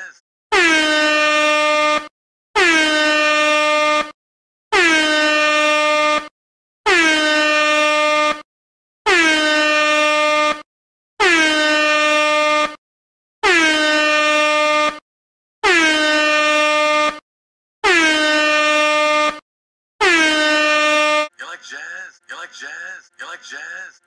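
Air horn sound effect blasted ten times in a row. Each blast is about a second and a half long, dips briefly in pitch as it starts, then holds one steady note, with short silent gaps between the blasts.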